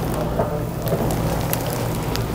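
Chiropractic treatment table's electric motor running: a steady low hum under an even hiss, with a few faint clicks.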